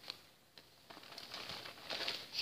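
Faint rustling and light clicks of fabric and paper being handled, growing a little louder after the first half second.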